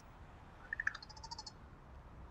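Soft bird calls: two short notes a little before a second in, then a quick high trill lasting about half a second.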